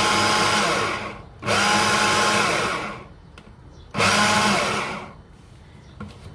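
Braun hand blender's motor driving its chopper attachment through strawberries and powdered sugar, run in short pulses. It runs, stops about a second in, runs again for about a second, pauses, then gives a third short burst about four seconds in. Each time the button is let go, the whine falls in pitch as the motor winds down.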